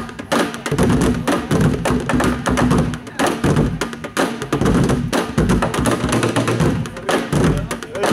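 Ensemble drumming on plastic tubs and barrels: several players beat wooden drumsticks on upturned black plastic tubs and blue plastic barrels in a fast, dense, continuous rhythm of hollow knocks and thuds.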